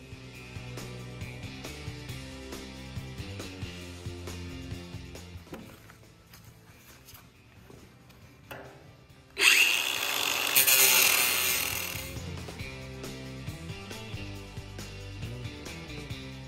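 Background music throughout. About nine seconds in, a cordless angle grinder with a cutting disc cuts into the steel shell of a water heater, loud for about three seconds, then fades away.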